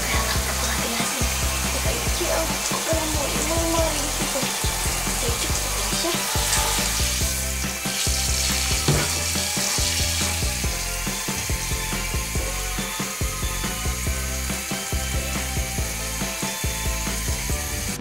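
Hand-held shower spraying water over a wet cat in a bathtub, a steady hiss throughout. Background music with a regular bass beat plays underneath.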